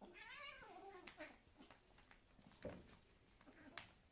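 A kitten's drawn-out meow, about a second long and falling in pitch, during rough play-fighting. It is followed by a few short soft knocks from the scuffle.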